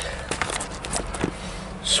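A few light clicks and rattles of a keyless-start key fob being handled and set in place under the dashboard, before the engine is started.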